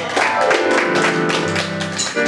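Live worship band music: a drum kit keeping a steady beat under held keyboard chords.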